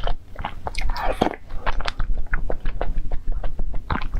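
Close-miked eating sounds from a person chewing spoonfuls of eight-treasure porridge: many short, wet mouth clicks, with a longer noisy sound about a second in.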